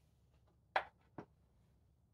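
Two light knocks of a wooden chess pawn on a wooden board, a stronger one about three-quarters of a second in and a fainter one about half a second later, as the piece is moved from one square to another.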